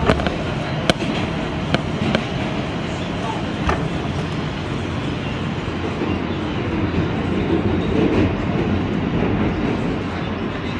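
An R160B subway car running at speed, heard from inside: a steady rumble of wheels on the rails, with a few sharp clicks over rail joints in the first four seconds.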